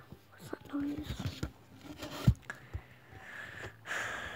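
A girl whispering close to a phone's microphone, with one sharp knock a little over two seconds in and a breathy hiss near the end.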